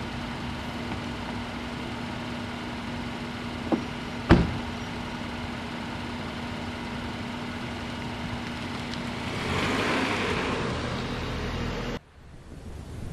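Kia Soul idling steadily, with a small click and then a car door slamming shut about four seconds in. Near the end a louder rush of engine and road noise swells as the car pulls away.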